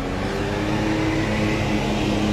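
Motor vehicle engine running with a steady hum, its pitch shifting slightly partway through.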